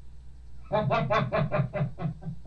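A man laughing: a run of quick, evenly spaced "ha-ha-ha" pulses, about five a second, starting under a second in and trailing off.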